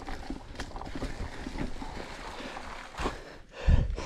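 Soft rustling and scattered small knocks, with a sharper knock about three seconds in and a low thump just before the end.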